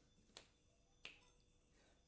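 Two faint, short clinks of tableware, about two-thirds of a second apart, against near silence.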